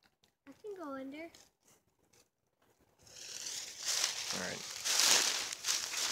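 Footsteps crunching and rustling through deep dry fallen leaves, starting about three seconds in and growing louder toward the end.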